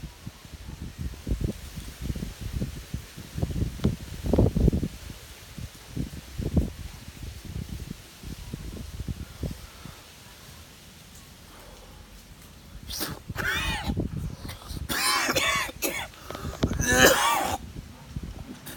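A man coughing and clearing his throat in a run of harsh bursts over the last five seconds, set off by the heat of a Carolina Reaper chili pepper he has just bitten into. Quieter low thumps come in the first half.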